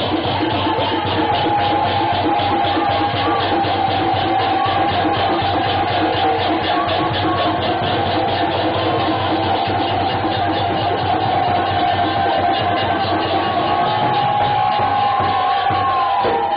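Harinam sankirtan: a group chanting to a fast, steady beat of percussion, with a long held note running through the music.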